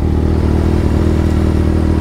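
Inline-four sport bike engine idling steadily at one even pitch, with no revving.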